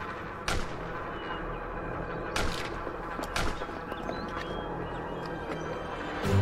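Gunshots: three loud, sharp cracks about half a second, two and a half and three and a half seconds in, over a continuous noisy din.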